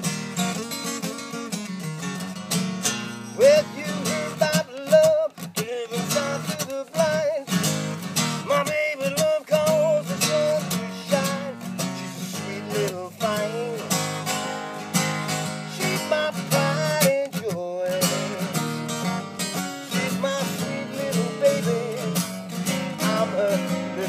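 Ovation acoustic guitar playing a blues song: a steady low bass rhythm under single-note lead lines that bend in pitch.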